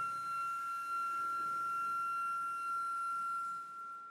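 Concert flute holding one long, soft, high note with an almost pure tone, fading away near the end.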